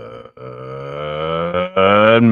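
A man's voice holding a long, drawn-out call, its pitch creeping slowly upward. It breaks off briefly about one and a half seconds in, then comes back louder.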